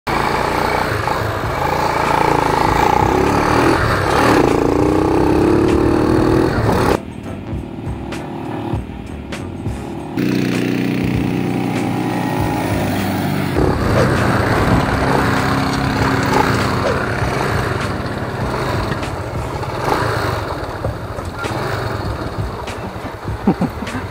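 Motorcycle engine running while being ridden, heard in several short clips cut together, so the sound changes abruptly at each cut. There is a quieter stretch from about seven to ten seconds in.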